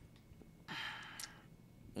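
A soft breath out, like a sigh, about two-thirds of a second in and lasting about half a second, against otherwise near-quiet room tone.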